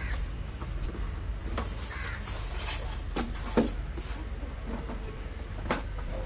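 Handling sounds as a printer is worked out of its polystyrene packing insert: scattered knocks and short squeaks of plastic and foam, over a steady low hum.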